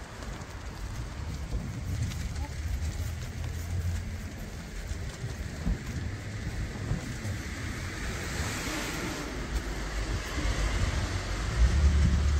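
Street traffic ambience: cars running by on the road, one passing with a swell of tyre hiss about eight to nine seconds in. Low wind rumble on the microphone, loudest near the end.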